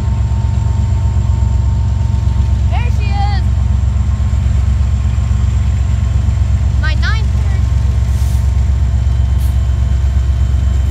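Diesel locomotives of a freight train approaching, their engines a loud, steady low rumble. Two short sliding high calls rise above it, about three and seven seconds in.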